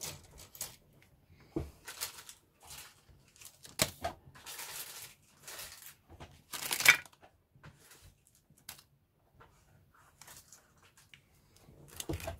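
Clear plastic parts bags rustling and crinkling in bursts as they are handled and set down, with a sharp click a little before four seconds and the loudest rustle near seven seconds.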